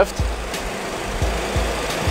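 Steady low rumble and hiss of a Boeing 737 full flight simulator cockpit, with a faint click near the end as a key on the flight management computer's keypad is pressed.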